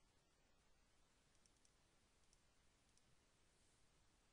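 Near silence: faint room tone with a few faint, short computer-mouse clicks, a quick group about one and a half seconds in and single ones later.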